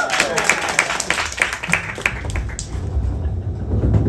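Audience clapping in a small live-music venue, dense at first and thinning out after about two seconds, with a low rumble from the stage building in the second half.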